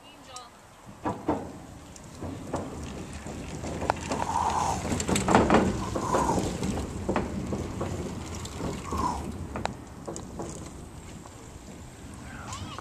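Bicycles rolling across a wooden-plank footbridge: a low rumble from the tyres on the boards, building to its loudest about five seconds in and easing off, with scattered knocks and rattles.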